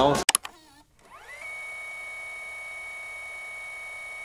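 Edited-in TV test-card tone effect. A couple of clicks and a brief warble give way to an electronic tone that rises quickly and settles into a steady, high-pitched whistle, held unchanged.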